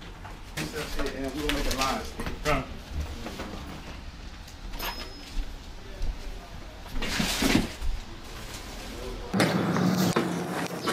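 Low, indistinct voices and handling noises in a small room, with a short burst of noise about seven seconds in.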